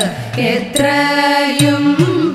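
Women singing a Thiruvathira song in Malayalam to idakka drum, the drum's strokes swooping down and back up in pitch in a steady rhythm. The singing dips briefly at the start, then a held note comes in about three quarters of a second in.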